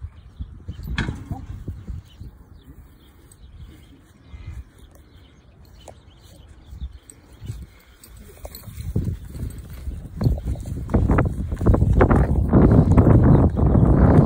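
Heavy footsteps and movement of a large Holstein steer walking on grass, with irregular low thuds that grow louder and busier in the last few seconds.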